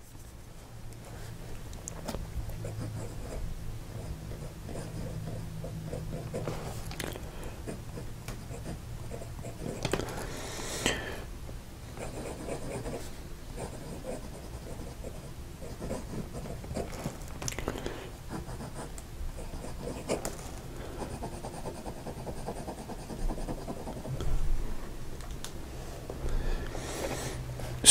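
Bulow X750 fountain pen nib scratching across grid paper in short, irregular strokes as words and loops are written, with a few louder scrapes.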